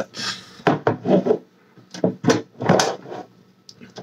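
Metal lunch-box-style tin being handled and opened by hand: a string of short, irregular scrapes and knocks from its lid and clasp.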